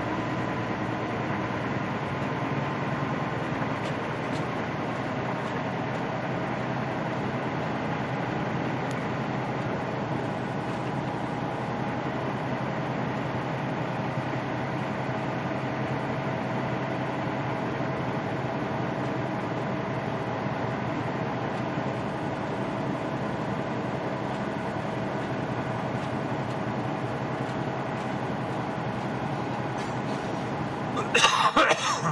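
Steady drone of a semi-truck's diesel engine and tyre noise heard from inside the cab while cruising at town speed, with a few faint steady tones running through it.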